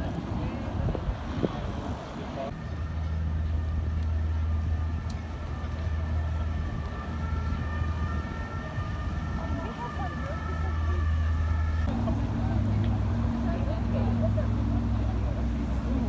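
City ambience: a steady engine hum that shifts to a different pitch about twelve seconds in, with people's voices in the background.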